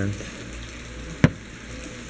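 A single sharp click as a steel axle C-clip is set down on a plastic lid, over a steady background hiss.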